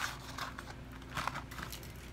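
Paperboard fries carton being handled as fries are picked out of it: a few short crinkles and rustles.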